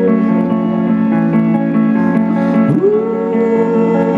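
Live indie rock band playing: an electric guitar strummed over sustained chords, with a long held note that slides up into place about two and a half seconds in.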